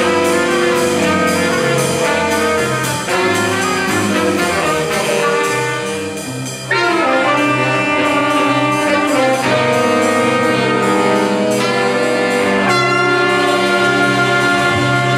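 A school jazz big band playing, with saxophones, trumpets and trombones over piano, bass and drums. About seven seconds in, the full ensemble comes in louder after a slightly softer passage.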